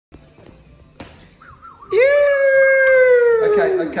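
A few faint clicks, then one long held musical note about halfway through: it scoops up in pitch, holds steady, and slides down as it fades out near the end.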